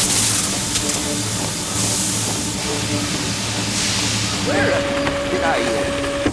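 Animated sound effects of steam hissing in repeated spurts from a coffee-soaked, shorting machine, over a steady low electrical hum. Past the middle, a steady electronic tone with warbling chirps sets in as the machine runs.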